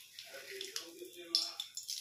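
Dried bay leaves dropped into hot cooking oil in a wok, giving a brief light sizzle and a few sharp crackles in the second half.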